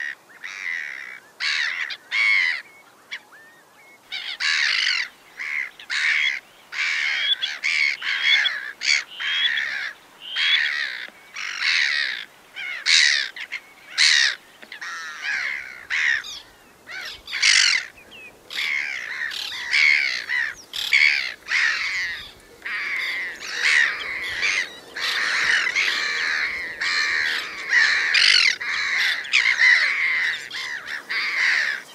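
A flock of birds calling: a quick, overlapping series of short, raspy calls from many birds at once, never pausing for long.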